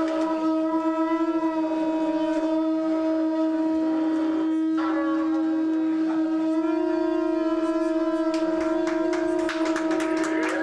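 A long, steady horn-like note held at one pitch, with a brief break about five seconds in. Sharp clicks or claps join near the end.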